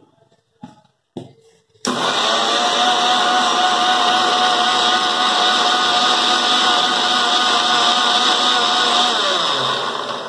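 Electric mixer-grinder (Indian 'mixie') blending milk and sattu in its steel jar: a few light knocks as the jar is seated, then the motor starts just under two seconds in and runs with a steady whine for about seven seconds. Near the end it is switched off and winds down, its pitch falling.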